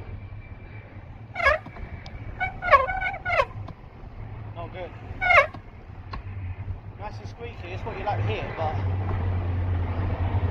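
Bicycle front brake squealing in several short, wavering squeals as it is applied during the first six seconds, over steady wind and road rumble; the brake is working properly.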